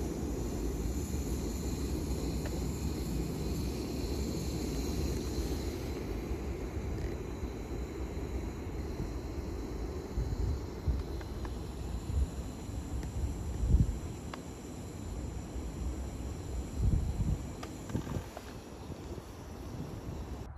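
Wind rumbling on the microphone outdoors, with a few soft low bumps.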